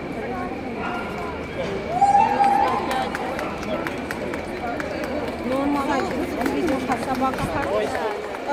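Indistinct voices and crowd chatter, louder from about two seconds in, with scattered faint clicks.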